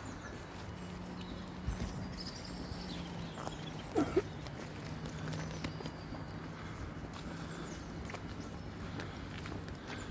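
Footsteps on a gravel path with scattered small clicks, a steady low hum and faint birdsong. About four seconds in come two short, sharp sounds close together, the loudest thing here.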